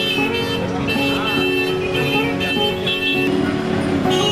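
Busy street sound: people talking and road traffic, with music playing over it.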